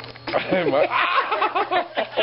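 People laughing: short chuckles and snickers from more than one person, overlapping.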